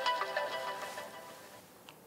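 Mobile phone ringtone: a melody of bright notes that fades out about a second and a half in, as the call is taken.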